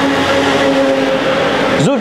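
A motor vehicle's engine running close by, a steady hum with a rushing hiss, filling a pause between words.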